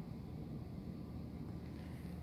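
Steady low background hum of a room's ventilation, with no distinct events.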